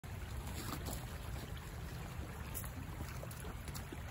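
Steady rush of a fast-flowing creek, mixed with a low, fluctuating rumble of wind on the microphone.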